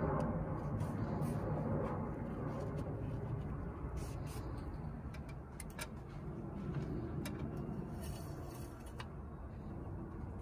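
Steady low background rumble, with a few faint light clicks scattered through it.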